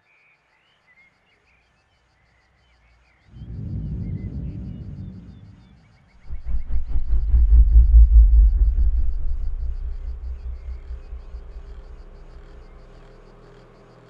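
Deep rumble in two swells: a short one about three seconds in, then a louder, fluttering one a few seconds later that fades away slowly. Faint bird chirps come before it.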